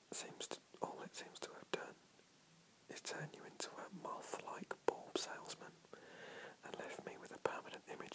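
A man whispering, reading aloud in short phrases, with a brief pause about two seconds in.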